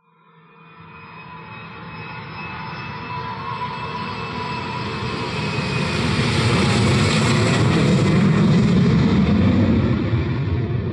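Jet airliner flying overhead: its engine noise fades in from silence and grows steadily louder for about eight seconds, then eases slightly. A thin whine runs through it.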